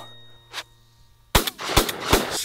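A single shotgun shot about a second and a half in, after a short near-quiet pause, with a couple of quick sharp cracks following it.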